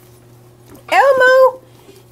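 A high-pitched voice makes one drawn-out vocal sound about a second in, lasting about half a second.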